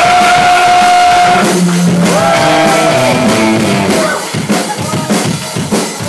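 Live psychobilly band music: an electric guitar holds one long note, then plays sliding, bending notes, with drums hitting underneath.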